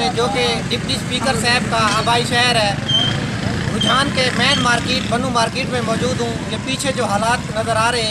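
A man talking into a handheld microphone, with a steady low background rumble underneath.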